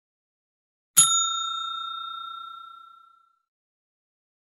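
A single bright bell ding, the sound effect of an animated subscribe button's notification bell, struck about a second in and ringing out for about two seconds.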